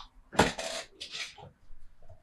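Stifled laughter: three short, breathy puffs of air, one with a faint voiced edge.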